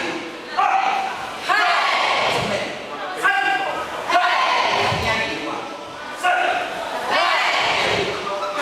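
A karate class shouting in unison, a short loud shout roughly once a second in time with their kicks and punches, with thuds of bare feet on a wooden floor, echoing in a large hall.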